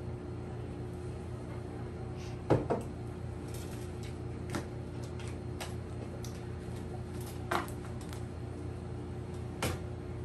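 Knocks and taps of a mug and tarot cards being set down and handled on a table: a sharp double knock about two and a half seconds in, then a few single taps spaced a second or two apart, over a steady low hum.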